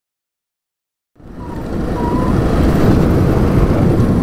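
Silence for about a second, then a Yamaha XT660Z Ténéré's single-cylinder four-stroke engine running under way on a sandy dirt track. The sound fades in over about a second and then holds steady and loud.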